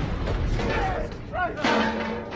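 Gas explosion: a deep rumble running on after a sudden blast, with a second sharp burst about one and a half seconds in.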